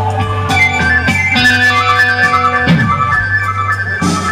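Live rock band playing an instrumental passage with no vocals: a high melody in short stepping notes over a held bass note.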